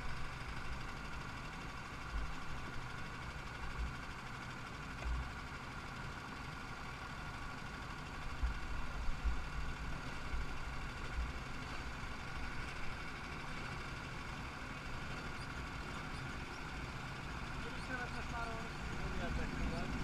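Go-kart engines idling steadily on the grid, with faint voices near the end.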